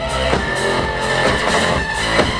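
Live electronic rock band playing loud through a club PA: guitar and synths over a heavy beat that lands just under once a second, with a high synth note held through most of it.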